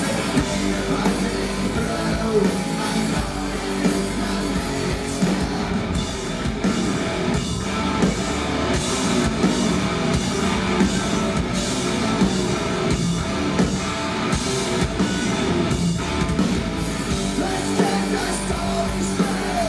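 Hard rock band playing live: distorted electric guitars, bass and a drum kit at full volume, with the singer's vocals over them.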